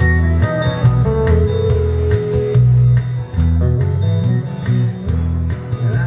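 Live electric guitar playing an instrumental passage over a strong, steadily pulsing bass line with a regular beat, without vocals.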